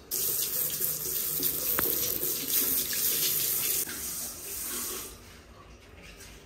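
Water running and splashing into a ceramic washbasin as it is rinsed. It is strong for the first four seconds, then softer, and is shut off about five seconds in.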